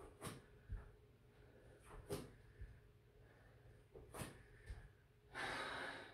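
Faint, sharp breaths out by a woman exercising, about one every two seconds, each followed a moment later by a soft low thud of a bare foot on an exercise mat as she steps back into a reverse lunge. A longer breath out comes near the end as the set finishes.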